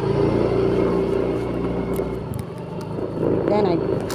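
Small motor-scooter engine running steadily on the move, its note falling away a little past halfway as the throttle eases.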